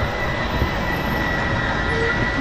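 Electric slide-out mechanism of a Grand Design Momentum 397TH fifth-wheel RV running as it draws the bedroom slide room in: a steady mechanical drone with a thin, steady high whine.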